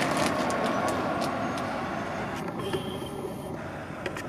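Steady rushing motor-vehicle noise that slowly fades, with scattered light clicks.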